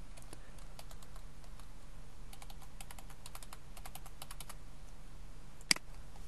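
Computer keyboard keys being typed in short quick runs as a password is entered, followed by one louder single click near the end, a mouse click, over a steady low hum.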